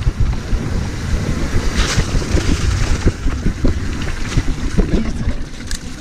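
Mountain bike ridden fast down a rough, rocky trail: wind buffeting the microphone over a constant rumble of tyres on stones and roots, with many short rattles and knocks from the bike, and a brief hiss about two seconds in.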